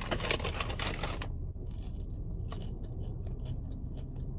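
A paper fast-food bag rustles for about the first second, then French fries are chewed, with soft crunches and small clicks.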